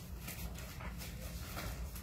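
Paper sheet music rustling as pages are turned on a piano's music stand, in several short crinkling bursts, with the piano silent.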